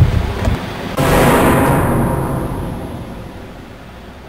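A sudden loud crash about a second in, dying away slowly over about three seconds.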